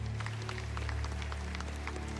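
Soft ambient worship-band intro: a held low keyboard pad chord, with quick, bright ticks scattered irregularly over it.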